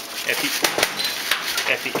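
Clatter of small hard objects: several sharp knocks close together, from something being dropped and knocking about, among a man's brief words.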